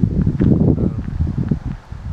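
Wind buffeting the microphone outdoors: a loud, low, rumbling noise that gusts up and down.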